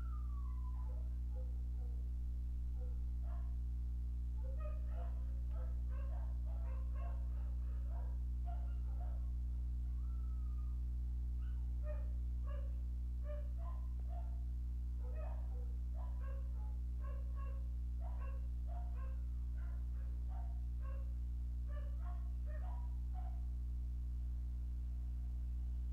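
A dog barking repeatedly in the background, in short yaps that come in runs of several a second with a brief pause midway, over a steady low electrical hum.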